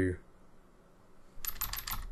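A quick run of five or six computer keyboard keystrokes about one and a half seconds in, as text is deleted from a form field.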